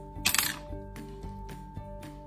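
Background music with steady held notes. About a quarter second in comes a brief loud crackle, handling noise from a raw prawn and a metal skewer.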